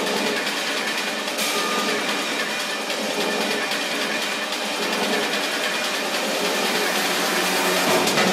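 Hard techno DJ mix in a breakdown: the kick and bass are cut out, leaving a dense, hissing layer of mid and high sound that swells a little toward the end, building up to the beat's return.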